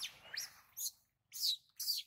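An infant long-tailed macaque giving a run of about five short, high-pitched squeaking calls, each with a quick glide in pitch, the last two the loudest.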